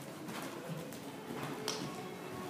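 Low cooing, like a pigeon's, over the steady background noise of the arena, with a single sharp knock near the end.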